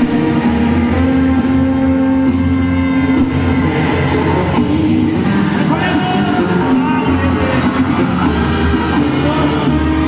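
Live regional Mexican band music: sousaphones holding low sustained bass notes under congas, drum kit and guitar, playing steadily throughout.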